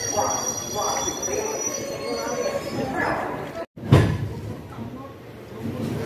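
Indian Railways passenger train rolling slowly, with a high wheel squeal from the rails and people's voices over the rumble. About three and a half seconds in the sound drops out briefly, then comes a thump and a quieter rumble of a train passing.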